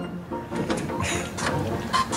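A wooden oar knocking lightly against a small wooden rowing boat and dipping into the harbour water as the rower starts to pull away: a few short knocks and splashes.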